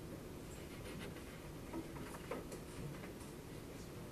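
Faint rustling and a few light taps of paper and a pencil being handled on a desk.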